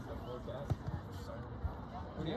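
A few short, dull thumps, the sharpest a little under a second in, over faint spectators' voices talking on the sideline.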